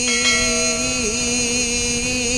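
A man singing a Punjabi devotional kalam into a microphone, holding one long note with small wavering ornaments and a brief dip in pitch about a second in.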